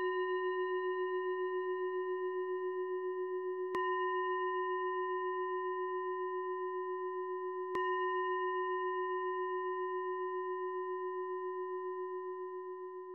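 A meditation singing bowl struck at the very start and twice more about four seconds apart, each strike ringing on with a slow wavering hum as it fades. It is the closing bell that ends the meditation talk.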